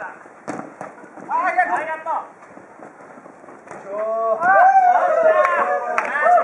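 Futsal players shouting to each other during play, loudest in the second half, with a few sharp thuds of the ball being kicked.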